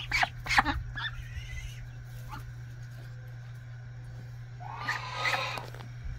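A short pitched call from the goose and goslings about five seconds in, with a few light taps near the start, over a steady low hum.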